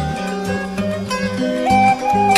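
Traditional plucked-string music: a zither-like instrument plays a melody that steps from note to note over low held tones that keep breaking and changing pitch.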